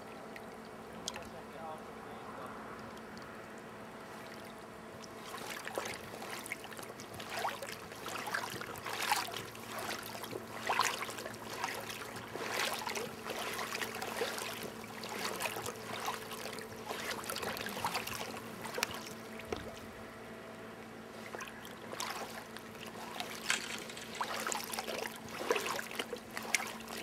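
River water lapping and trickling close by, with irregular splashy bursts from about five seconds in.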